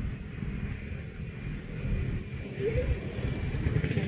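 Uneven low rumble of background noise, with a brief voice about two and a half seconds in.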